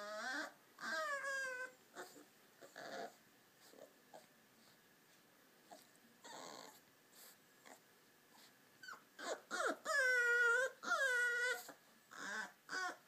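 Beagle puppy whining and whimpering in high cries that fall in pitch: a couple of short ones at the start, quieter breathy sounds in the middle, then a louder run of whines near the end.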